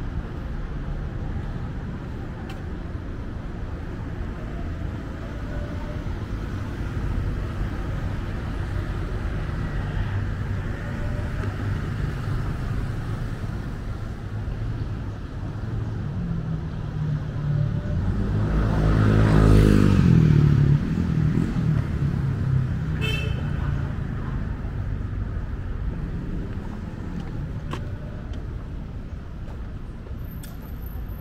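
City street traffic: a steady low rumble of road traffic, with one motor vehicle passing close about two-thirds of the way through, its engine swelling to the loudest point and then fading away.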